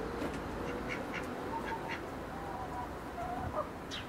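Birds calling: many short, sharp chirps and a few brief held notes over a steady background hiss.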